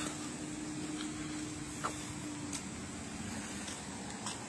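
Steady outdoor background noise with a faint low hum that fades out a little past halfway, and one small tap about two seconds in.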